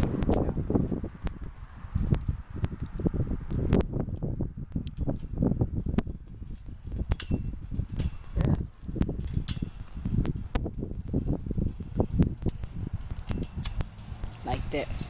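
Microphone handling noise: irregular low thumps and rubbing as the camera is held against clothing and moved about. Scattered light clicks come from the chain-link gate's padlock being handled.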